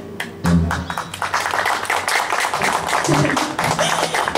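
Audience applause right after a song ends, dense hand clapping that swells about half a second in as the last guitar chord dies away, with voices mixed in.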